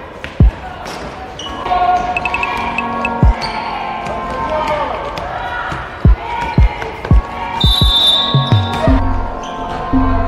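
A basketball bouncing on a wooden sports-hall floor during play: a few scattered thuds, then a quicker run of bounces from about six to eight seconds in, with voices in the hall.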